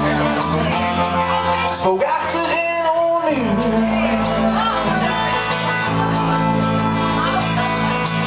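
Live band playing an instrumental passage: a bowed fiddle over electric and acoustic guitar, with a sliding note falling in pitch about three seconds in.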